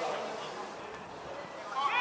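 Distant calls and shouts of footballers and touchline coaches carrying across an open pitch, with a louder call near the end, over a steady background noise.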